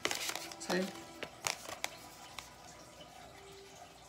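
Tarot cards being handled and laid out: a quick run of crisp flicks and snaps at the start, then a few single card clicks over the next two seconds. A brief vocal murmur comes about three-quarters of a second in.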